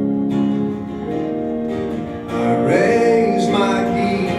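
Live acoustic guitar strumming chords, backed by electric guitar, in an instrumental passage. About halfway through, a wavering melody line that bends in pitch swells in, louder than the strumming.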